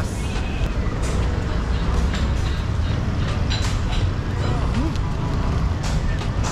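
Steady low rumble of outdoor street traffic mixed with crowd noise, with no nearby voice in the foreground.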